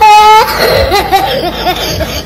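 A young boy's short wailing cry that breaks into loud, hearty laughter, coming in repeated bursts of about four a second.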